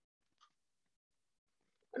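Near silence: room tone, with a faint brief click about half a second in and a man's voice starting at the very end.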